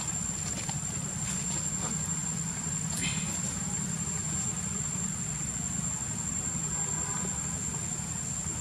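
Steady outdoor background: a low rumble under a constant high-pitched whine, with a few faint ticks and a brief higher sound about three seconds in.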